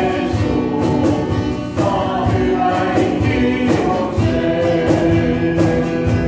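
Small mixed church choir singing a gospel song in parts, voices holding long notes over an accompaniment with a steady beat.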